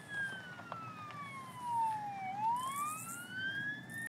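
Emergency vehicle siren wailing faintly, its pitch falling slowly for a little over two seconds, then rising again.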